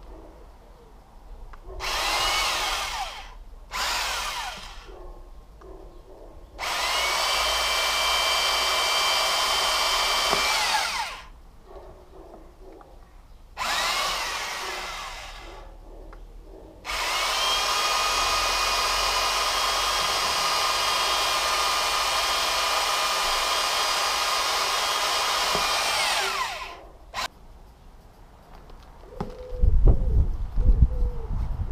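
Cordless drill boring holes through the rubber of a car tyre in five separate runs: two short ones, then about four seconds, a short one and a long run of about nine seconds, each winding down in pitch as the trigger is released. A few low knocks come just before the end.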